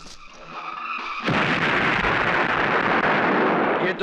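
Film sound effect of a dynamite stick exploding: a sudden loud blast about a second in, followed by a steady roar that lasts over two seconds and cuts off sharply.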